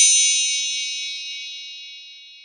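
A single bright, bell-like notification ding, struck just before and ringing on while it slowly fades away.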